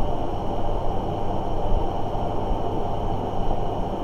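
Steady low rumble of room background noise with a faint high whine held throughout; nothing starts or stops.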